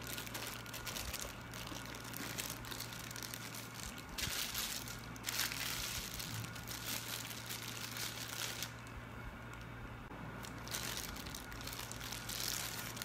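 Clear plastic wrapping crinkling and rustling as a microphone is unwrapped by hand, in uneven bursts that are loudest about four to six seconds in and again near the end.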